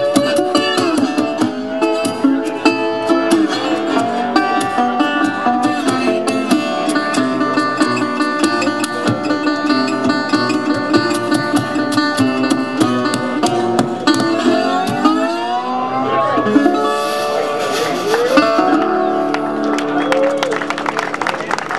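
Acoustic blues duo playing an instrumental passage: a fingerpicked acoustic guitar under a harmonica playing held notes. About three-quarters of the way through, the harmonica bends its notes sharply upward.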